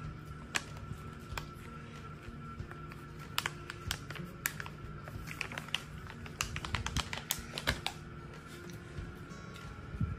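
Chihuahua chewing a dog chew stick: a run of sharp, clicky crunches that come in two clusters, one a few seconds in and one in the second half.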